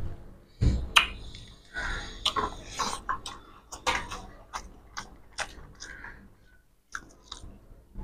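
Two people eating rice and fish curry with their hands: close-up chewing and mouth smacks, mixed with irregular short clicks of fingers and food against steel plates.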